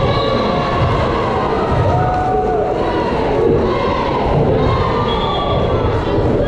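Volleyball spectators in the bleachers cheering and shouting, many voices overlapping into a steady roar of crowd noise.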